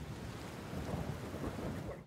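Rain-and-thunder sound effect: heavy rain with a low rumble of thunder beneath it, cutting off suddenly at the end.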